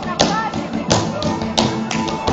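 Sharp percussive hits from a man's Gypsy solo dance, his stamps and slaps landing about three times in two seconds, over live keyboard music.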